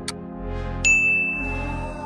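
A single bright ding sound effect struck about a second in, ringing on as one steady high tone, over background music.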